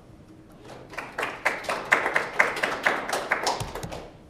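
A small group applauding: clapping starts about a second in, then fades out near the end, with a low thump just before it stops.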